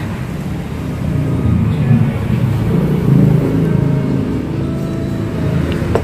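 Engine rumble of a road vehicle passing on the street, swelling about a second in, strongest around the middle, then easing off.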